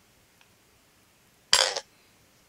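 Tiny metal button spinning top flicked onto a glass mirror: a faint tick about half a second in, then a short, loud rattle of metal on glass, under a third of a second long, about one and a half seconds in.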